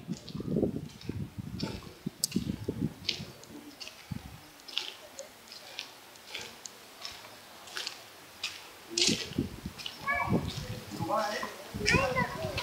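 Footsteps on cobblestones at a walking pace, sharp scuffing ticks about every half second, with low thumps on the microphone in the first few seconds. A small child's voice is heard near the end.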